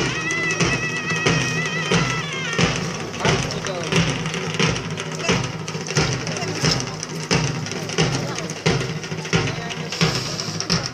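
Devotional procession music: a drum beaten in a steady beat about one and a half strokes a second, with crowd voices over it. For the first two seconds or so a high, wavering note sounds over the beat.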